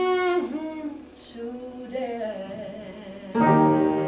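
A woman singing a slow song solo into a microphone: a held note, then a quieter wavering line, with a piano chord struck loudly about three-quarters of the way in.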